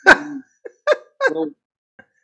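A man laughing: a loud first burst, then a few short bursts of laughter about a second in.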